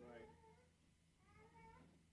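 Near silence: room tone with a low steady hum and two faint, brief high calls, one at the start and one past the middle.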